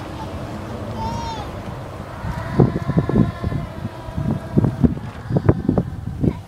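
A group of children's voices, quiet at first, then from about two seconds in a run of short, loud, irregular shouted or chanted bursts.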